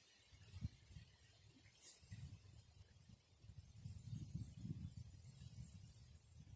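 Near silence: faint outdoor ambience with an uneven low rumble of wind on the microphone.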